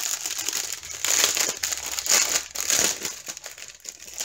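Clear plastic bag of small diamond-drill packets crinkling in the hands, in irregular crackles.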